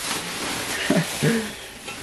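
Plastic wrapping rustling and crinkling as it is pulled off a wheel in a cardboard box. A brief vocal sound comes about a second in.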